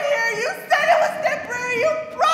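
A woman's high voice singing, sliding up into each held, wavering note, with new notes starting about two-thirds of a second and again about a second and a half in.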